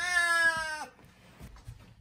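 Cat meowing once: a single clear call under a second long that drops in pitch at its end.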